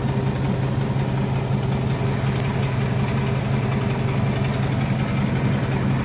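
Tatra T148's air-cooled V8 diesel idling steadily in neutral, freshly started, heard from inside the cab.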